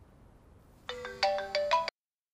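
Mobile phone ringtone: a quick run of bright melodic notes starting about a second in, cut off abruptly just before the end.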